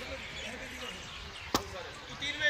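A single sharp smack about one and a half seconds in, over faint background voices.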